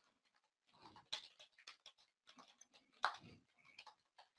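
Faint, irregular computer keyboard keystrokes, with two louder short sounds about a second in and about three seconds in.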